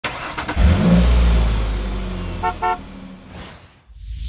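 Traffic sound effect: a low car engine rumble swells up and slowly fades, a car horn gives two short toots about two and a half seconds in, and a faint swish comes near the end.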